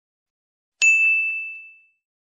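A single bright bell ding, the notification-bell sound effect of a subscribe-button animation, struck about a second in and fading away over about a second.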